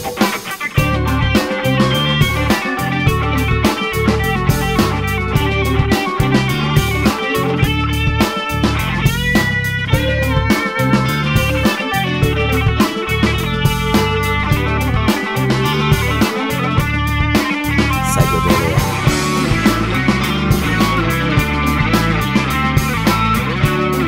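Blues-rock instrumental break: a lead electric guitar plays over bass and a steady drum-kit beat, with a run of fast bent notes about ten seconds in.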